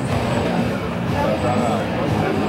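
Steady crowd voices and background rock music filling the hall, with no distinct impact or hit standing out.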